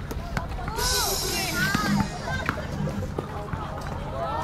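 A basketball bouncing on an outdoor court, several sharp knocks, among short squeaky chirps, players' voices and background music.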